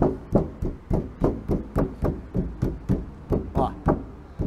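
Knuckles knocking in quick succession on a car's sheet-steel door skin, about three to four knocks a second. The knocks sound out the panel: a flexible sound means open metal, and a change marks an inner cross brace glued behind it.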